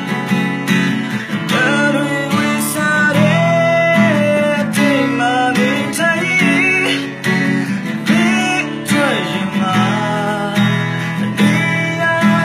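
A man singing a Burmese song while strumming an acoustic guitar in a steady rhythm, the voice coming in about a second and a half in.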